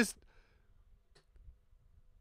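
A man's voice trails off, then a pause of quiet small-room tone broken by a single soft click just over a second in.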